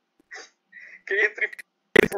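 A man's voice speaking Portuguese verse in short, choppy fragments, with dead-silent gaps in between, heard over video-call audio.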